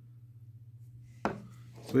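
A plastic paint pot set down on a wooden desk: one sharp tap about a second in, over a faint steady low hum.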